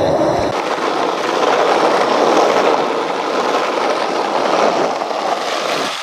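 Skateboard wheels rolling steadily over rough asphalt, a loud, even rolling noise that comes in about half a second in.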